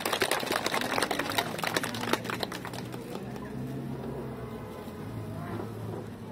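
Audience applauding: dense clapping that thins out and fades after about three seconds.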